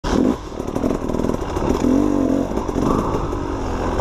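Dirt bike engine revving up and down while riding a rough, rutted forest trail, its pitch rising and falling with the throttle.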